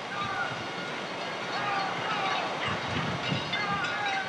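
Herd of horses galloping: a dull drumming of hooves under a steady rushing noise, with a few faint high sliding calls.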